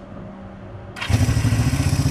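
A 1976 Honda CB360T's twin-cylinder engine starts about a second in and settles into an even, rhythmic run. The bike has just had its carburettors adjusted and its ignition timing set, with new contact points.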